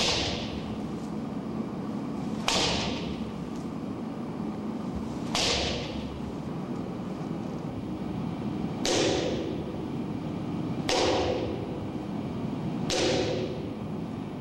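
A kendo practice sword swung hard overhead through the air in repeated solo practice swings: six swishes, one every two to three seconds.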